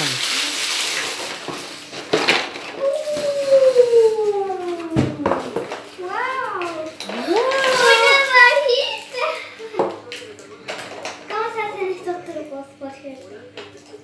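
A child's wordless excited cries: a long falling 'ooh' a few seconds in, then rising-and-falling squeals around the middle. Underneath, rustling and short clicks of a magic-trick kit's box and plastic pieces being handled.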